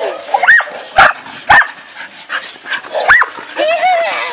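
Border collies barking excitedly: three sharp barks about half a second apart, then a fourth about three seconds in.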